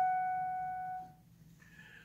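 A single note on a digital piano, struck just before and ringing on, fading away and dying out about a second in.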